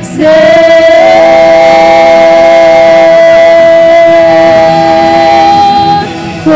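Female worship singers with band accompaniment holding one long sung note, with a second, higher note joining in harmony about a second in.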